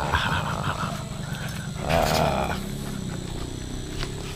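A dog vocalizing in two short bursts, one at the start and one about two seconds in, over a steady low background hum.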